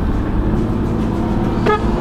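Jeep engine and road rumble heard from inside the moving cabin: a steady low drone with an engine hum that settles slightly lower about a second in.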